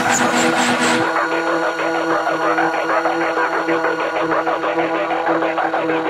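Dark electronic music with a steady, engine-like droning synth and a fast even pulse; the sound changes texture about a second in.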